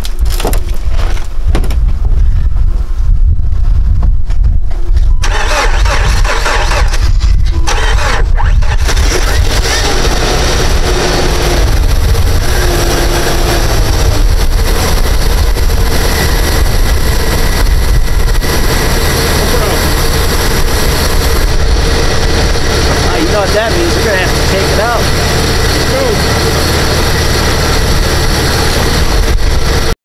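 Jeep Wrangler TJ engine being cold-started in about five degrees Fahrenheit: it cranks for about five seconds, catches, and keeps running, getting louder a few seconds later and then running steadily.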